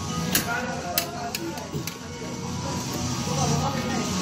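Background music playing steadily, with a few sharp clicks in the first two seconds.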